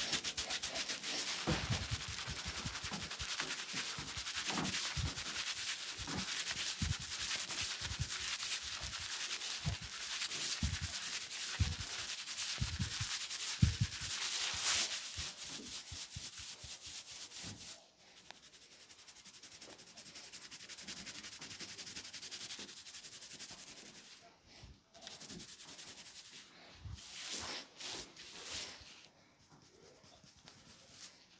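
Hands rubbing and massaging a man's head and neck close to the microphone: a fast, dense scratchy rustle with occasional soft knocks, becoming quieter and sparser after about 18 seconds.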